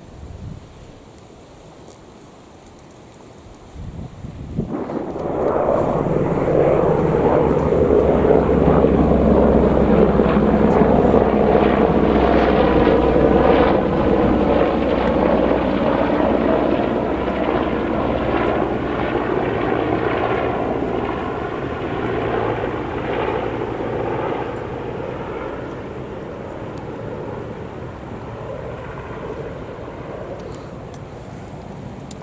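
A three-engined AgustaWestland AW101 Merlin helicopter flying low overhead. It comes in suddenly about four seconds in with a steady low hum and rotor throb, is loudest for several seconds, then slowly fades as it flies away.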